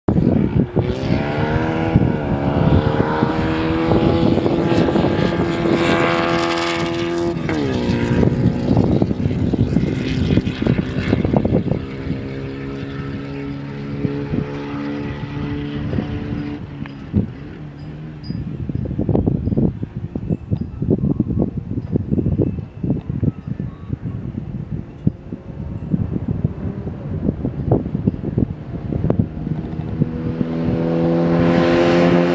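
Open-wheel race car engine on a lap. It accelerates with rising pitch, holds a high steady note, and drops sharply in pitch about seven seconds in. It then runs on more faintly and fades, with wind rumbling on the microphone, and grows louder and higher again near the end as the car comes closer.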